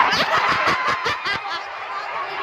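Audience members laughing, a quick run of giggles that dies down after about a second and a half.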